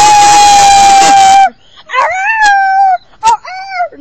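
A pet dog howling along with people's howling. One long, loud howl is held until about a second and a half in, then come a shorter howl that rises and falls and a couple of brief howls near the end.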